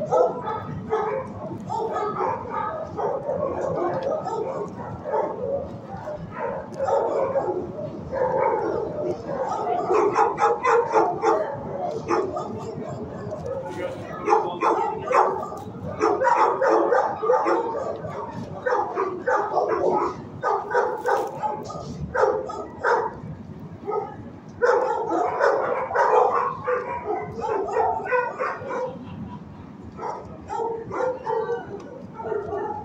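Many shelter dogs barking and yipping at once in a kennel block, a continuous overlapping din.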